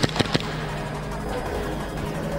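A few quick shots from an SSP18 airsoft pistol running on tethered HPA (high-pressure air), sharp cracks in the first half-second. Background music plays underneath.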